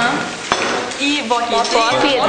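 Paper being torn by hand off a poster board, a rough tearing and rustling with a sharp click about half a second in. Voices talk over it.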